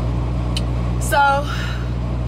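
Steady low hum of a parked semi-truck running, heard from inside the cab, with one short spoken word about a second in.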